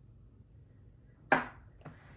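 A sharp tap followed by a softer one about half a second later, from the open sketchbook being handled on the table.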